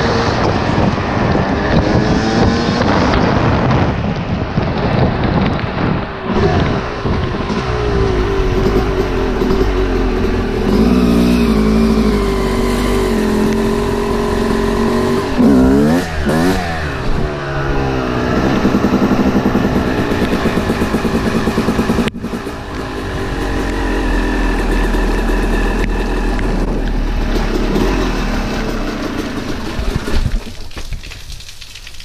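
Yamaha YZ250 two-stroke dirt bike engine under way at road speed, its pitch rising and falling as the throttle and gears change, with the biggest swings around the middle; wind rushes over the microphone throughout.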